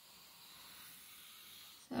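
Faint pencil scratching across paper as lines are drawn, a soft steady hiss.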